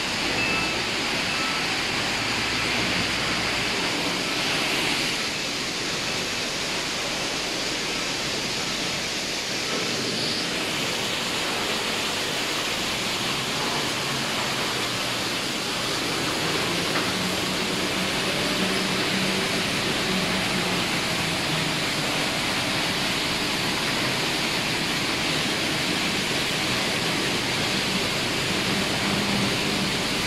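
Steady industrial machinery din in an aluminium processing plant hall: a dense rushing noise with no single machine standing out. A repeating electronic beep sounds in the first second or so, and a low machine hum joins about halfway through.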